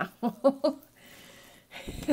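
A woman's short, breathy laugh in three or four quick bursts, followed by the faint rustle of tarot cards being handled on a cloth-covered table and a soft thump near the end.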